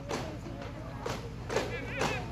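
Daff frame drums struck in a steady beat, about two strikes a second.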